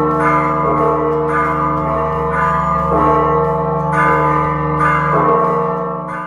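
Church bells ringing, a fresh strike roughly every second over a deep, sustained hum that rings on between the strikes.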